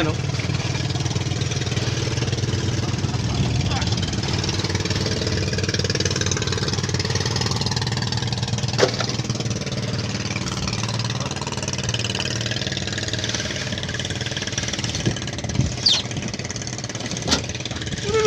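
Small outrigger fishing boat's engine running steadily at idle, with a few sharp knocks in the last few seconds.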